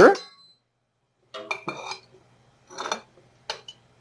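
A table knife clinking and tapping against a dish as butter is taken up for the pan: a few light clinks with brief ringing, starting about a second in.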